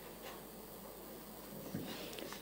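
Faint room tone of a large chamber, with a couple of soft, brief handling noises about a quarter second in and again near the end.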